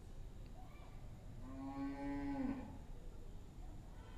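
A single faint, drawn-out call about a second into the pause, held on one pitch for about a second and dropping at the end.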